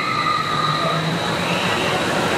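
Intamin Impulse roller coaster train launching out of the station on its linear induction motors. A steady electric whine sounds over the rush and rumble of the train rolling past.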